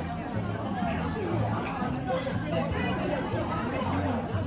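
Several people talking over one another in a busy café, a steady hubbub of voices.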